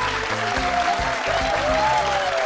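Background music with a group of people clapping along.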